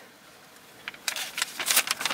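Paper and a clear plastic document sleeve rustling and crackling as folded sheets are pulled out and handled, a quick run of crisp crackles from about a second in.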